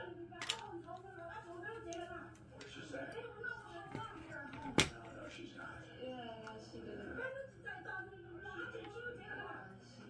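Speech from a television playing in the room, with no words picked out. Two sharp clicks of small tools and metal parts being handled cut through it, a light one about half a second in and a louder one near the middle.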